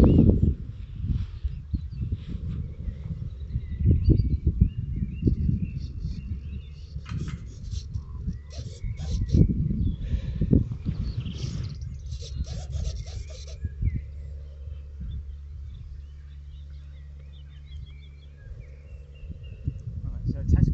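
Wind rumbling and buffeting on the microphone in irregular gusts, with faint high chirps and a run of short crackles in the middle.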